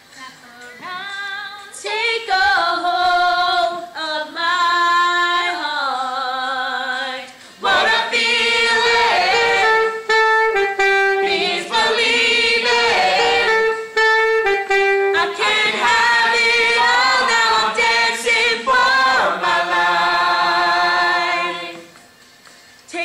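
A group of young voices singing the chorus of a song together, starting a second or two in, with a brief break about seven and a half seconds in, and stopping just before the end.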